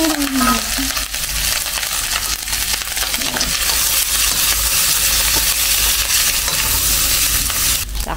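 Garlic fried rice sizzling in a wok while a spatula stirs and turns it over, with light scrapes of the spatula against the pan.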